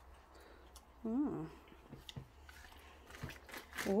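A Reese's dipped pretzel being bitten and chewed: scattered crisp clicks and crunches, most of them near the end. A brief voiced sound comes about a second in.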